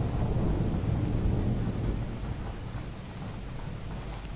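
Thunder rumbling over steady rain, the rumble slowly dying away after a clap.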